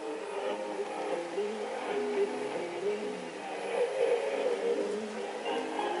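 Music from a shortwave broadcast on 6070 kHz, coming through a homemade receiver's speaker at full volume over a steady hiss of static.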